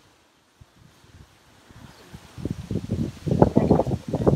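Leafy shrub branches rustling close up, a dense crackle of leaves and twigs being brushed that sets in about two seconds in and grows louder near the end.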